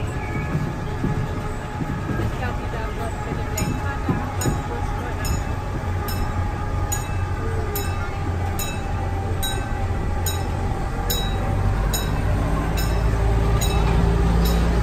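Amusement-park monorail train running along its single elevated rail, heard from on board: a steady low rumble that grows louder near the end. From about three seconds in there is a light, even clicking about twice a second.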